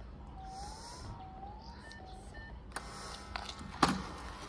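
Building door-entry intercom panel: short keypad beeps, then a rising ringing tone repeated about three times as it calls the flat. Nearly three seconds in the door-release buzzer starts, and a sharp click just before the end marks the lock opening.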